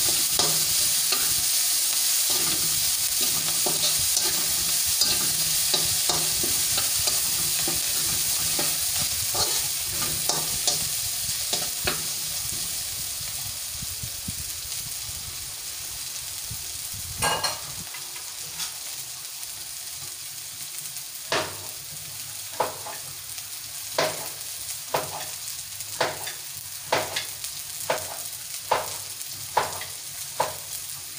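Chopped garlic and red onion frying in oil in an aluminium wok, stirred with a spatula at first: a steady sizzle that slowly fades over the first half. In the second half come sharp pops about once a second.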